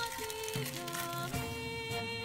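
Background music: an Indonesian school march playing, with steady held notes.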